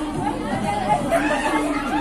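Several women's voices chattering over one another, not clear enough to make out words.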